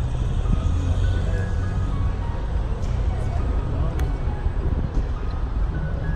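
Cabin noise of a moving car: a steady low road-and-engine rumble, with music faintly in the background.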